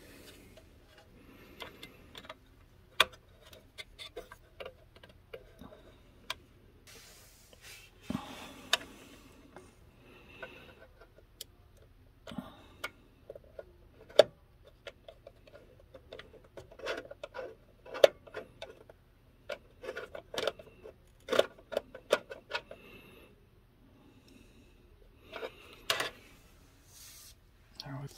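Small clicks, taps and rustling of hands fitting an M.2 NVMe SSD into a motherboard's M.2 slot inside a PC case, with a few sharper clicks as the drive is pressed into place. A faint steady low hum runs underneath.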